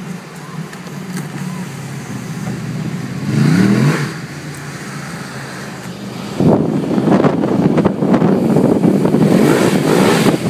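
Ducati 1199 Panigale S's L-twin engine revving, its pitch rising, for a moment about three and a half seconds in, heard from inside a following car over that car's steady engine hum. From about six seconds on, loud wind noise rushes over the microphone.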